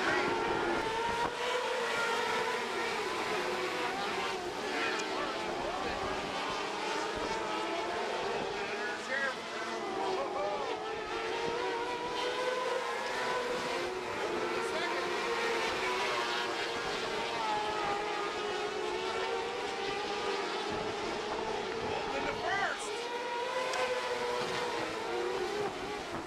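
Dirt-track race car engines running laps. Their pitch rises and falls in long waves as the cars accelerate down the straights and lift for the turns.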